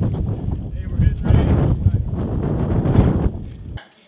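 Loud, uneven low rumble of wind buffeting the microphone, with muffled voices underneath; it cuts off abruptly just before the end.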